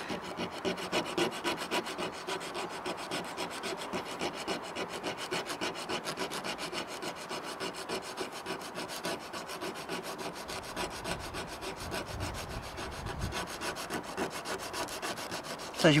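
Wooden skewer tip rubbed back and forth on 120-grit sandpaper in quick, even strokes, sanding it to an even taper.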